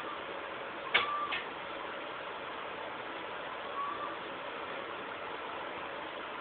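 Steady hiss of background noise, with a sharp click about a second in, a softer click just after it, and a brief faint tone near four seconds.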